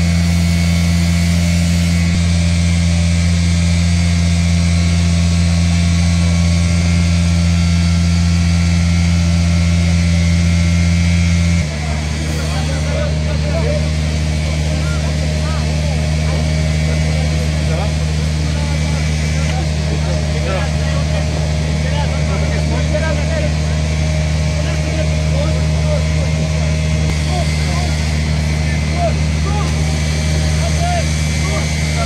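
A small engine running steadily with a low drone, which drops slightly in pitch with a brief dip in level about twelve seconds in. Faint voices can be heard behind it.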